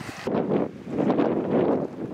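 Wind buffeting the microphone, rising and falling in a few gusts.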